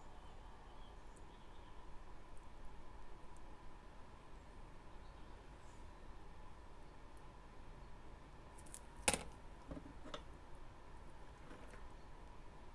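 Quiet workbench with a faint steady hum, broken by a few light clicks of small hand tools being handled, with one sharper click about nine seconds in.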